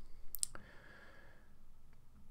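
A few short, sharp clicks close together about half a second in, then quiet room tone.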